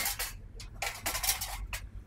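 Metal loading ramp clattering and scraping as it is lifted off a pickup's tailgate and slid into the truck bed, with several sharp metallic knocks.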